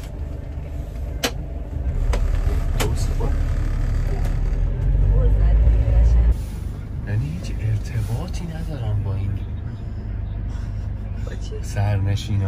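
Low engine and road rumble inside a moving London black cab, heard from the back seat. The rumble drops sharply about six seconds in, and there are two sharp clicks in the first three seconds.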